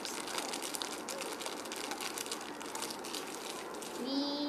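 Thin clear plastic packet crinkling as it is opened by hand: a dense, continuous run of quick crackles.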